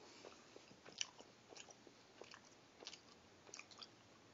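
Faint chewing of a mouthful of soft breakfast burrito: irregular small mouth clicks and smacks, with a slightly sharper click about a second in.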